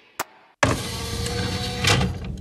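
A sampled mechanical sound from the Steampunk sample library, a collection of recorded clocks, cranks, levers, steam and machines. One click, then about half a second in a sustained noisy mechanical sound with a faint, slowly rising tone, and a sharp knock near the end.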